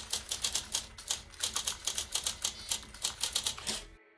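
Typewriter sound effect: a rapid, even run of keystroke clicks, several a second, that stops near the end.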